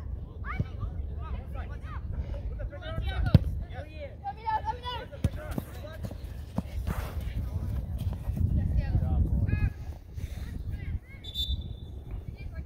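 Youth soccer game: young players' and sideline voices shouting and calling out across the field, with sharp knocks of the ball being kicked, the loudest about three seconds in.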